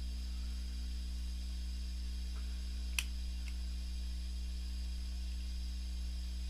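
Steady low electrical hum, mains hum with its overtones, with a single sharp click about halfway through.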